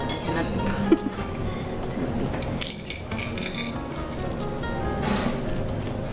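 Background music, with metal cutlery clinking against a plate a few times; the sharpest clink comes about a second in.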